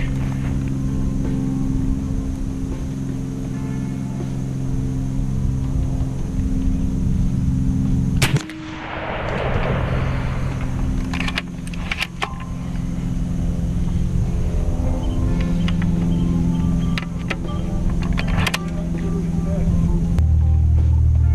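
AEA Zeus .72 caliber big-bore PCP air rifle firing one shot about eight seconds in: a sharp report, then about two seconds of rushing noise that fades. Background music with sustained low tones plays throughout.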